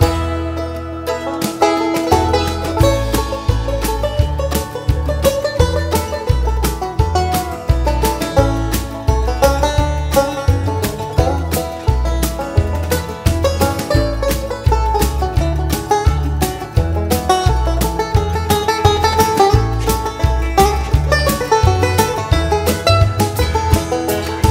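Instrumental break in a country song: banjo picking with guitar and bass over a steady beat.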